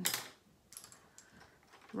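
A short hiss right at the start, then a few faint, light clicks and taps of small objects being handled.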